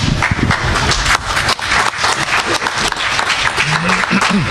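Audience applauding, many hands clapping quickly and irregularly.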